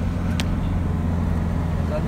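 Car engine and road noise heard from inside the cabin while driving: a steady low drone, with a single short click about half a second in.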